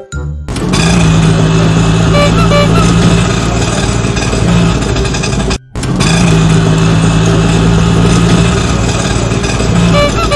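Auto-rickshaw (bajaj) engine running, played as a loud sound effect twice, each about five seconds long, with a brief gap before the middle. A few short high beeps sound within each run.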